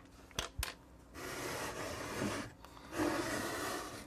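Handling noise: two quick clicks, then two stretches of rubbing and scraping, each a second or more long, as the camera or the opened unit is moved.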